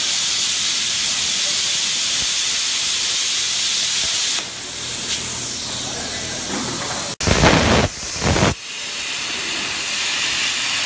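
Plasma cutter torch hissing loudly as its arc cuts through steel plate. About four seconds in the arc stops and a softer rush of air from the torch carries on. Near the end there is a brief loud rumbling noise, then a steady hiss again as cutting resumes.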